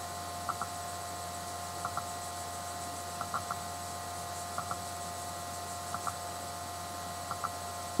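Steady electrical hum with a thin constant whine from the recording setup, broken by faint double ticks about every second and a half.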